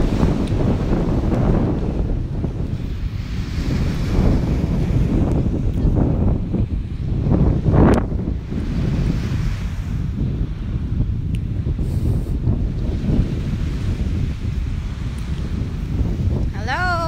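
Wind buffeting a phone's microphone in a loud, uneven rumble, with the strongest gust about halfway through, over the hiss of ocean surf breaking on the beach.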